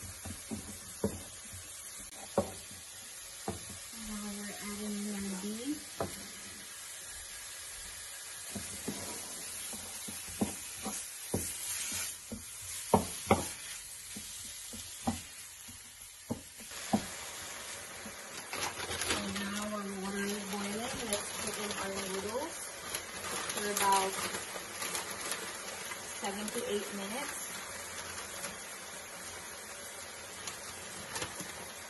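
Garlic, onion and sliced beef sizzling in sesame oil in a frying pan, with a wooden spatula knocking and scraping on the pan as it stirs. The sizzle grows louder a little past halfway, as the beef goes in.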